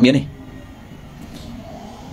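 A man's speaking voice ends a phrase right at the start, followed by a pause of low, steady background noise.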